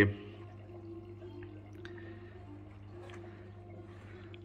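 A faint pause between speech: a steady low hum with faint, wavering higher tones behind it and a few soft ticks.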